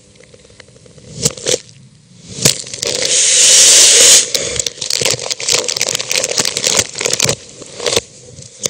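Crackling and crinkling of paper or wrapping being crumpled in the hands. A few sharp crackles come first, then a loud dense rustle about three seconds in, then a quick run of sharp crackles.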